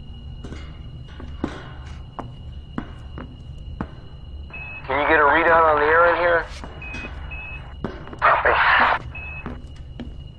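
Science-fiction film sound effects: a low steady drone with short electronic beeps and scattered clicks. About halfway, a loud warbling sound lasts about a second and a half, and near the end a loud hiss comes in a short burst.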